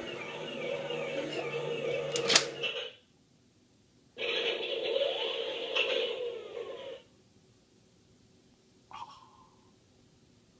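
Star Wars MTT toy playing its electronic sound effects while its front hatch opens and the battle droid rack pushes out: two bursts of about three seconds each, the first ending with a sharp click, then a brief blip near the end.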